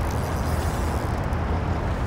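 Steady outdoor noise of wind and choppy river water, with a deep low rumble from wind buffeting the microphone.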